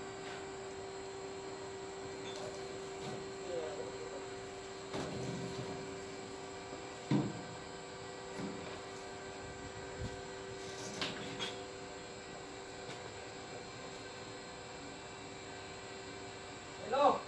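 Heavy rubber chemical hose being handled and moved, with a few dull knocks, the loudest about seven seconds in, over a steady machine hum.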